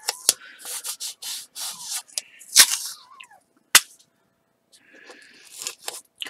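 Blue painter's tape being pulled off the roll, torn and rubbed down onto a paper stencil: a series of short rasping bursts with a few sharp snaps. There is a brief pause about four seconds in, then more rasping.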